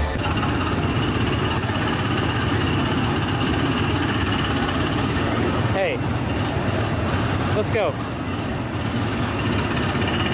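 Small gasoline engines of ride go-karts running on the track, a loud, steady, fast rattle that goes on throughout.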